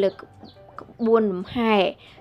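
A woman's voice narrating, her pitch sweeping up and down in long drawn syllables.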